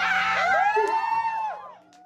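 Concert audience screaming and cheering, many high voices overlapping, fading away near the end.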